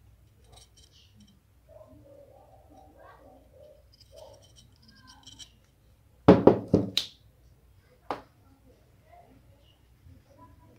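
Sharp knocks and clicks from handling a homemade metal-can torch body with a copper tube: a quick cluster of four or five knocks a little past halfway, then a single knock about two seconds later.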